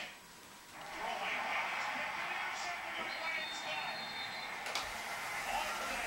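Football game broadcast playing through a television speaker: a steady stadium crowd din with no clear words. It follows a brief quieter gap as the recording cuts back in about a second in.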